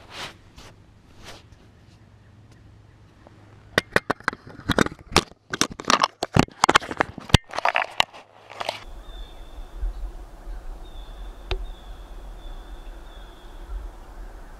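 A run of sharp crunches and clicks in snow on ice for about five seconds. Then a steady low wind rumble on the microphone, with a few faint high peeps.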